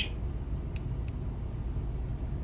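Steady low rumble inside a minivan's cabin with the engine idling, and two faint clicks about a second in.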